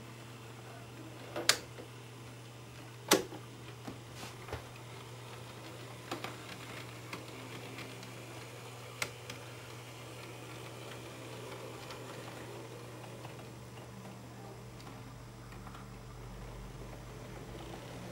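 Sharp clicks of the turnout controls on an N-scale model railway layout being switched: two loud clicks about a second and a half apart, then a few fainter clicks, over a steady low hum.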